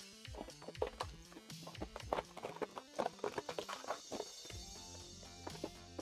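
Brown paper protective backing being peeled and torn off a sheet of orange acrylic: quick, irregular paper crackling and ripping, easing off near the end, with quiet background music underneath. An "aggressive ASMR" sound of paper being pulled off fast rather than slow and steady.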